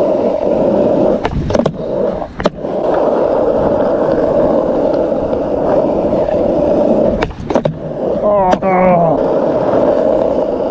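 Skateboard wheels rolling over rough asphalt, a steady rumble, broken by a few sharp clicks or knocks from the board about a second or two in and again about seven seconds in.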